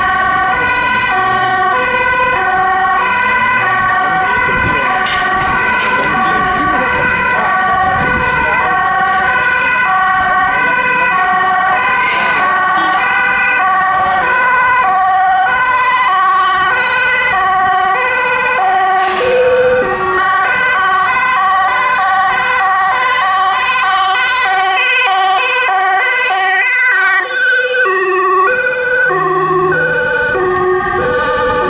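Several Dutch emergency-vehicle two-tone sirens sounding at once, each switching back and forth between a high and a low note, out of step with one another. They mark vehicles driving under priority 1, with lights and sirens.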